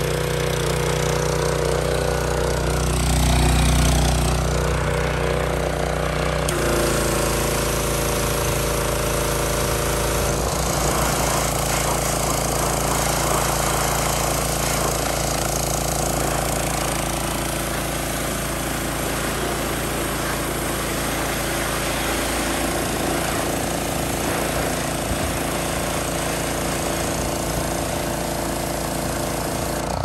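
Predator pressure washer's small single-cylinder Honda-clone engine running steadily on its newly fitted replacement carburetor. The engine note changes about six seconds in as the pump takes load, and the high-pressure water jet hisses along with it from about ten seconds in.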